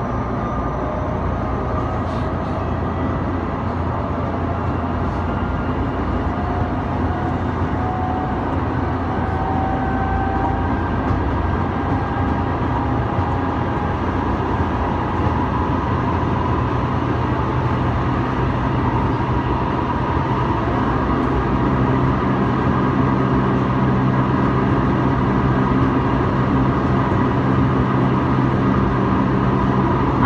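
Odakyu 2000-series commuter train heard from inside the passenger car while running between stations: a steady rumble of wheels on rail, with the motor whine rising in pitch over the first dozen seconds as the train gathers speed, then holding steady.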